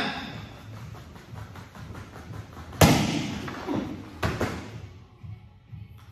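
Two sharp smacks about a second and a half apart, the first the louder.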